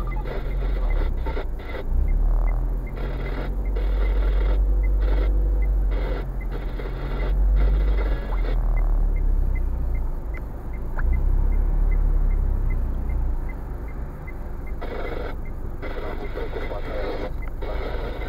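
Inside a stationary car's cabin: a steady low engine rumble with traffic passing, and a faint regular ticking about twice a second.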